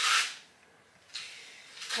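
Paintbrush bristles rubbing oven cleaner onto a carved wooden cabinet: a faint, scratchy hiss. It follows a brief gap of dead silence.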